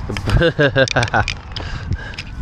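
A man laughing: a quick run of short 'ha' bursts lasting about a second, then fading out.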